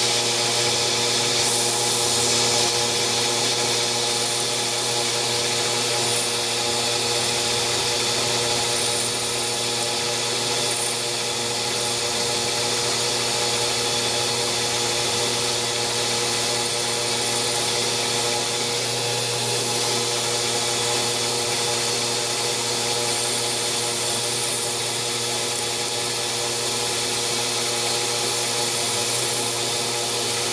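Grizzly G0602 CNC lathe turning a titanium spacer at 1200 rpm with a carbide insert tool: a steady hum from the motor and spindle, with several even tones under a hiss of cutting, unbroken throughout.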